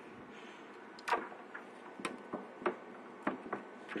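Small irregular clicks and taps from handling an EVGA GeForce 8800 GT's heatsink cooler and circuit board, as the cooler is lowered back onto the board on a wooden table.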